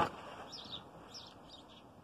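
Small songbirds chirping a few short, faint calls over a low steady background hiss.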